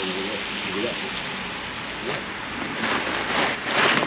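Steady hiss of traffic on a wet, slushy street, like tyres on a wet road, swelling near the end as a car passes.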